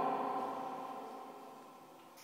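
One held electronic note from a red Korg Electribe sampler, a steady pitched tone with several overtones, fading out gradually until it is almost gone near the end.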